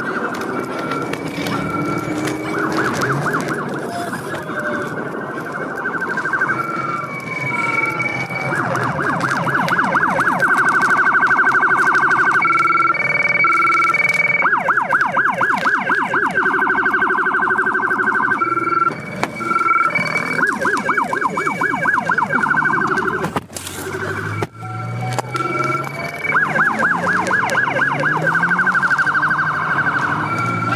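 Police car sirens sounding loud and close, switching back and forth between a rapid warble and a steady pulsing high tone. Near the end a car engine revs up underneath.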